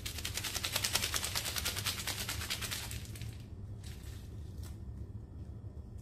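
Plastic instant-noodle seasoning packet being handled: a rapid crackling rattle, about ten crackles a second, for roughly three seconds, then a few faint clicks.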